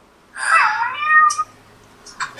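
Domestic cat meowing once, a call of about a second whose pitch dips and then rises.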